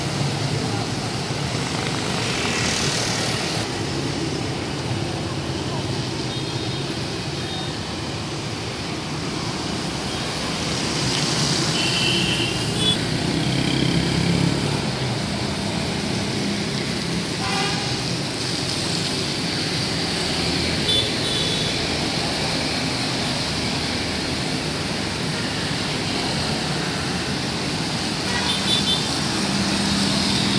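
Street traffic: scooters and cars passing on a wet road, a steady wash of engine and tyre noise with a few short horn beeps.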